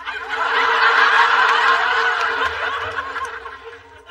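Studio audience laughing after a punchline, swelling quickly and fading away over about three seconds.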